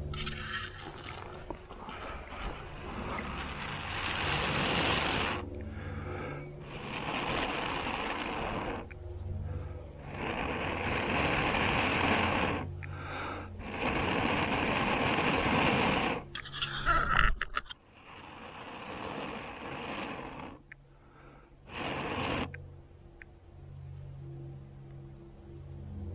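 Long breaths blown steadily into a smouldering bundle of wood shavings on a char-cloth ember in a small tin, about seven blows of one to four seconds each with short pauses for breath, nursing the ember into flame. A brief, louder crackling rustle comes about two-thirds of the way through.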